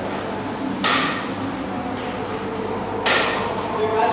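Two sharp knocks with a short metallic ring, about a second in and again near the end, over a steady background hum.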